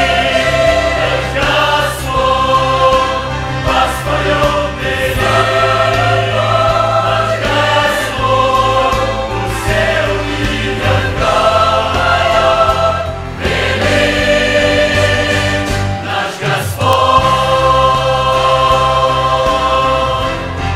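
Mixed youth choir, women's and men's voices, singing a Russian-language Christian hymn in sustained chords, with a brief break between phrases about sixteen seconds in.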